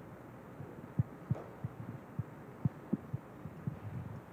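Irregular dull low thumps and bumps from a handheld microphone being handled, about a dozen over a few seconds, over faint room tone.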